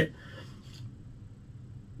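Quiet room tone in a pause between spoken sentences, with the end of a spoken word at the very start.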